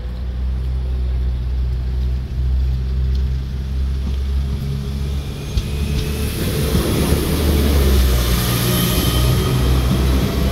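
Northern Ireland Railways Class 4000 diesel multiple unit running with a steady low engine hum, then pulling away and passing close by, with a rushing train noise that builds from about six seconds in and is loudest near the end.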